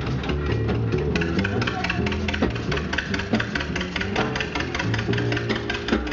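A jazz band playing music with a steady beat.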